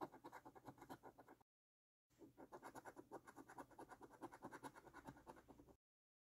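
A coin scraping the scratch-off coating from a paper lottery scratch card in rapid, quick back-and-forth strokes. The sound is faint and comes in two runs, broken by a short silent gap about a second and a half in.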